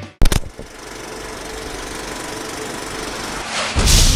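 Sound-effect sting for a studio logo ident: a sharp hit about a quarter second in, then a steady rushing noise that swells louder near the end.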